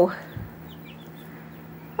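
Young chicks peeping faintly in a few short high chirps over a steady low hum, with a soft low thump about half a second in.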